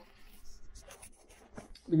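Faint scratching and rustling handling noises as the camera is picked up and moved, a scatter of small clicks and rubs.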